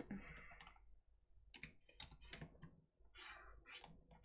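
Faint clicking and tapping at the computer while a lasso selection is made in Photoshop: a quick run of clicks around the middle, then a few short, scratchy strokes near the end.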